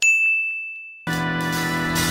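A single bright ding, a bell-like sound effect that rings out and fades over about a second, followed by background music starting about a second in.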